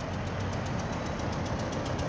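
Steady low rumble of outdoor street background noise, with no sudden events.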